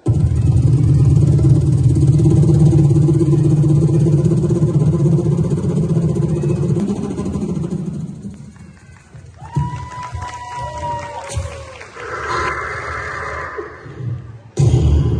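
Music played loud through a hall's sound system. A steady, droning low part runs for about eight seconds, then it drops away to quieter gliding tones and a hiss near the end.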